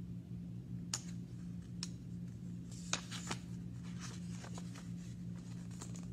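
Pages of a hardcover picture book being handled and turned: a few short paper crinkles and taps, the loudest about three seconds in, over a steady low hum.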